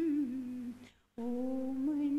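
A woman singing a devotional bhajan in long held notes. The first note dips in pitch and fades out, and after a short breath about a second in she takes up a new steady note.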